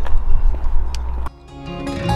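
Low wind rumble on the microphone outdoors that cuts off abruptly about a second in, followed by background music fading in with sustained notes.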